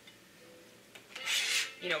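A short rasping scrape, about half a second long, starting a little over a second in: a kitchen utensil scraped across a surface during food preparation.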